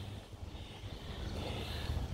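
Quiet outdoor background: a faint, steady low rumble with no distinct events.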